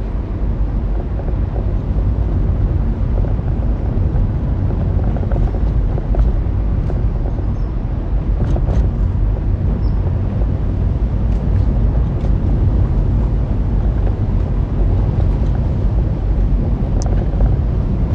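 Vehicle driving on a gravel road: a steady low rumble of tyres and engine, with a few faint ticks here and there.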